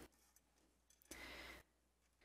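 Near silence, with one brief faint hiss about a second in.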